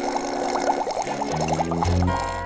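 Cartoon sound effect of milk being drunk through a straw: a quick run of gurgling, bubbling slurps over soft held music notes, with a low bass note joining near the end.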